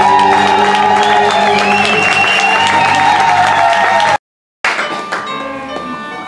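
Live folk band of acoustic guitars, bass guitar and fiddle playing loudly, with long held notes that waver slightly in pitch. About four seconds in the sound drops out completely for a moment, then resumes quieter with separate sustained notes.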